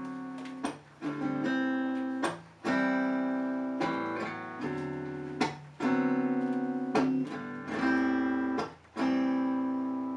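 Acoustic guitar strumming chords, each chord left to ring for a second or two before the next, with short breaks between some of them.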